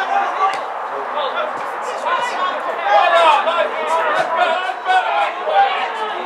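Several men's voices shouting and calling out across a football pitch during play, raised and loud throughout.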